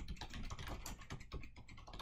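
Computer keyboard being typed on: a quick, continuous run of key clicks.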